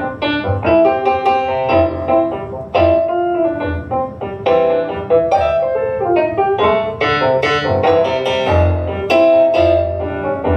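Stage piano played solo in an instrumental passage without singing: a run of struck chords with low bass notes beneath.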